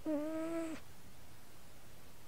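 A sleeping domestic cat gives one short meow, under a second long, at a steady pitch, starting right at the beginning and cutting off abruptly.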